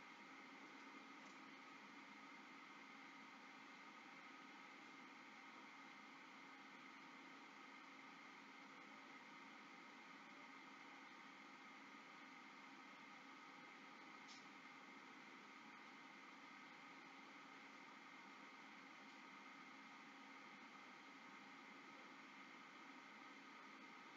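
Near silence: faint steady background hiss and hum, with one faint click a little past halfway.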